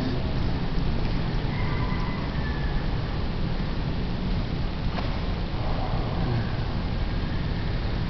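Steady background noise, with faint brief high tones about one and a half to two and a half seconds in and a single short click about five seconds in.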